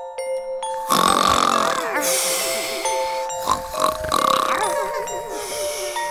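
Cartoon snoring sound effects, a run of loud snores starting about a second in, over soft music with held notes.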